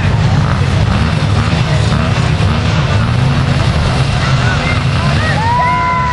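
Several youth quad (ATV) engines idling together on a race start line, a steady low rumble. Near the end a voice calls out in one long held tone.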